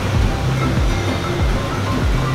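Background music with sustained low bass notes over a noisy wash.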